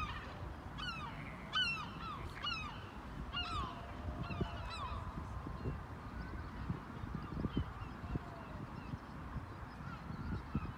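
Birds calling: a run of short honking calls that fall in pitch, crowded together in the first few seconds and then fewer and fainter, over a low outdoor rumble.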